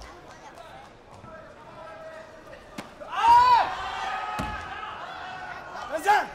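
A loud shouted cry about three seconds in, rising then falling in pitch, that carries on as a held cry for about two seconds. It is typical of a taekwondo fighter's kihap during an exchange. A sharp click comes just before it and a dull thud about a second after it starts.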